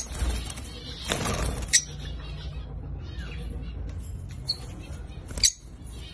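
Caged lovebirds giving short, sharp chirps, one about a second and a half in and another near the end, with a brief rustle of movement just after the first second.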